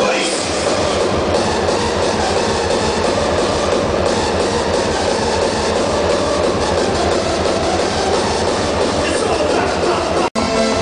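Hardstyle dance music played over a large arena sound system, recorded from among the crowd as a loud, dense wash with a pulsing low beat and no clear melody, with crowd voices mixed in.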